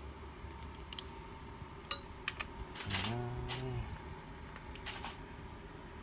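Scattered light clicks and rustles of a hand turning a new K&N spin-on oil filter snug on a Kawasaki Ninja 300 engine, being hand-tightened just a little more. A short hum or grunt from the man comes about three seconds in.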